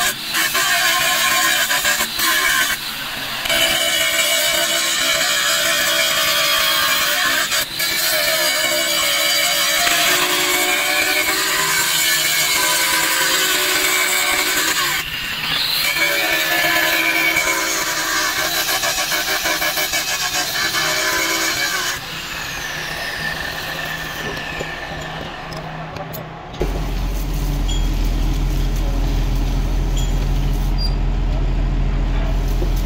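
Angle grinder with a cutting disc cutting through a metal pillow block bearing housing, its pitch shifting under load; about 22 s in it is switched off and spins down with a falling whine. A steady low hum starts near the end.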